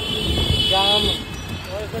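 Busy street traffic heard from a moving scooter: steady engine and road rumble, with a steady high-pitched tone for about the first second and a brief voice in the middle.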